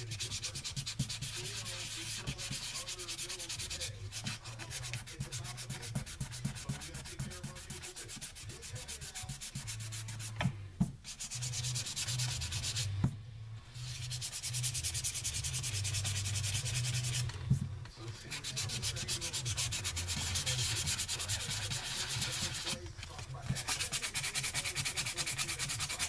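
Sandpaper rubbed by hand in rapid back-and-forth strokes over a guitar headstock, sanding away the old finish on the headstock face. The scraping runs on with several brief pauses.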